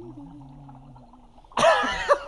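A man bursts out laughing about one and a half seconds in, loud and sudden after a quiet stretch with only faint low held tones.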